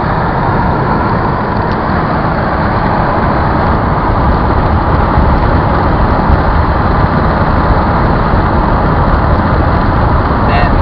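Steady road and wind noise inside the cabin of a moving car, with no distinct events.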